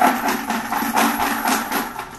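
Draw lots rattling and clattering as they are shaken in a fire bucket to mix them before a drawing; the rattle dies away right at the end.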